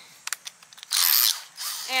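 Cordless drill being handled: a few light clicks, then two short rasping ratchet sounds, about a second in and again near the end, as the drill's keyless chuck is twisted by hand.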